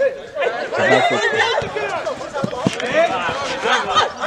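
Several people's voices overlapping, talking and calling out at once: excited chatter with no single clear speaker.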